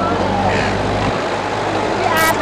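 A motor vehicle's engine running with a steady low hum, weakening about a second in, with the voices of passers-by behind it.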